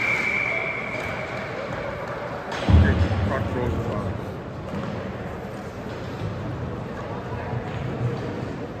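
Ice rink sounds at a hockey game: a referee's whistle blows one steady, long blast for about two and a half seconds. A heavy thud follows just under three seconds in, over the murmur of voices in the arena.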